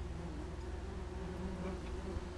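A swarm of German yellowjackets buzzing in a steady, wavering drone, the wasps agitated.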